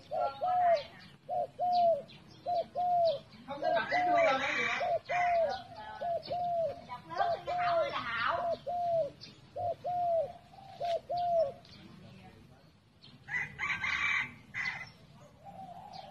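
Spotted dove cooing: a long run of short, arched coos, about one and a half a second, that stops about eleven seconds in and starts again near the end. Two brief bursts of higher-pitched chatter sound over it, one about four seconds in and one about fourteen seconds in.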